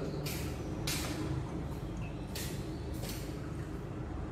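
A steady low room hum with four short rustles of a reagent bottle and glass beaker being handled.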